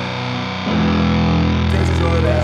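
Crust punk band playing, with heavily distorted electric guitars. Under a second in, the music shifts to a louder, heavier low chord.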